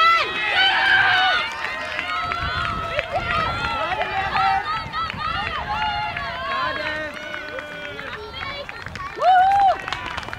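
Several voices shouting and cheering over one another as a rugby player breaks away to score, loudest at first, with one loud call near the end.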